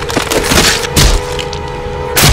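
Hard cracking, breaking impacts from a horror-film sound mix: a few sharp hits, the loudest about a second in, over a steady held tone.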